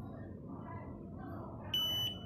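Low room noise, then near the end a single high-pitched electronic beep of about half a second from the HF4000 Plus fingerprint scanner's buzzer, signalling that the fingerprint image capture has succeeded.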